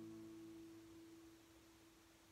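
The acoustic guitar's final chord ringing out and dying away, one note holding longest as it fades towards silence.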